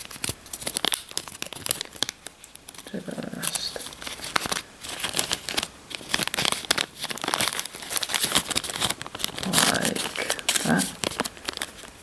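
Small clear plastic zip-seal bag crinkling and rustling in the hands as a damp paper towel is stuffed into it, a dense irregular crackle throughout.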